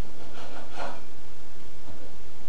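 A knife cutting through whiting fish on a cutting board: two short sawing strokes in the first second, the second one louder.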